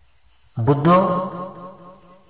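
A man's voice chanting, a held, intoned phrase that starts about half a second in and fades toward the end.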